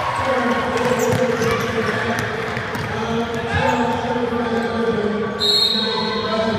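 Basketball bouncing on a hard indoor court amid many voices, with a short high tone near the end.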